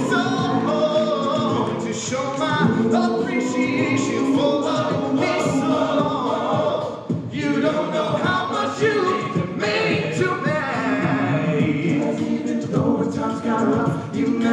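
All-male a cappella group singing an R&B song in close harmony, held chords under a lead voice, with a vocal-percussion beat keeping time. The sound drops back briefly about seven seconds in before the full group comes in again.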